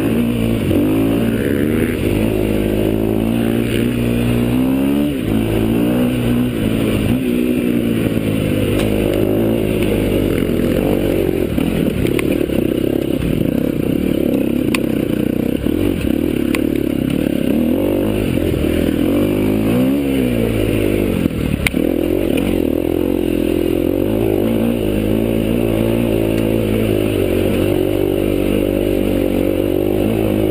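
Off-road enduro motorcycle engine heard close up from the bike being ridden, its revs rising and falling constantly over a rough dirt trail, with a sharp knock about 21 seconds in.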